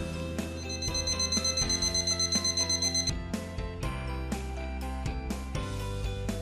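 A high-pitched electronic alarm beeping rapidly for about two and a half seconds, starting about half a second in, then stopping; background music plays throughout.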